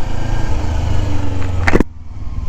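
Kawasaki Ninja 250 parallel-twin engine running steadily at low road speed, with no ticking ('ketak-ketak') to be heard now that the dealer has fixed it. A short sharp sound comes near the end.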